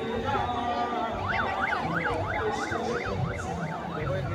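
Electronic siren in fast yelp mode, its pitch sweeping up and down about three times a second, starting about a second in, over the murmur of a large crowd.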